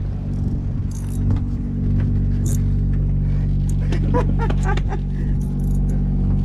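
The boat's inboard diesel engines running steadily, a low even drone with no change in speed.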